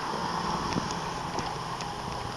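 Faint clicks and knocks from the Pontiac Solstice's folded fabric soft top and its frame being lifted out of the trunk, over a low steady outdoor background hiss.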